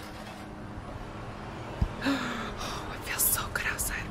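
A woman's quiet whispered speech in the second half, after a single soft thump just before two seconds in.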